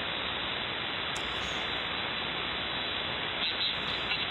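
Steady hiss of HF band noise from a software-defined radio receiver tuned to the 75-metre band with no station transmitting, the dead air between two operators' overs. The hiss is even and dull, with its treble cut off sharply by the receiver's filter.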